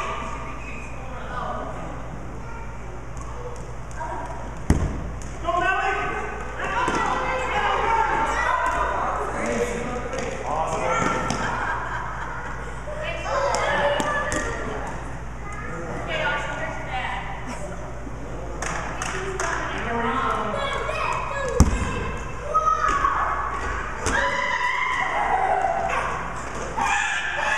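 Children and adults talking and calling out across a large echoing gym during a kickball game, with two sharp thumps of the rubber kickball, one about five seconds in and one about four seconds before the end.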